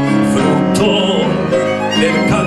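Violin playing a melody with a live tango ensemble, bowed notes held and changing in pitch.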